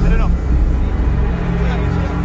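Film soundtrack mix: a loud low rumble that swells at the start, under sustained music tones, with brief voices calling out at the start and again near the end.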